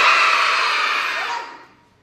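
A class of young children cheering together in one long, loud shout that dies away after about a second and a half.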